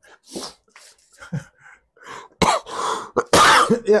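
A man coughing: a few soft breathy sounds, then two loud, harsh coughs in the second half.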